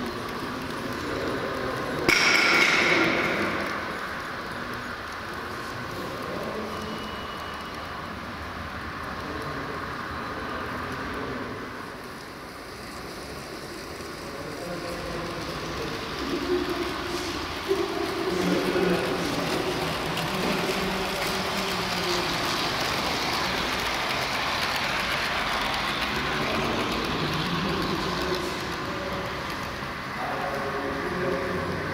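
H0-scale model freight train, container wagons behind a GFR LE3400 kW electric locomotive model, rolling along the layout track with a steady running rattle. A sudden loud sound with a short ringing tail comes about two seconds in.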